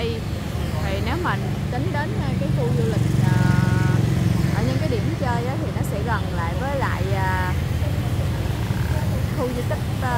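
Motorbike traffic running past on a city street, a steady low rumble that swells about three seconds in, with people's voices chattering nearby.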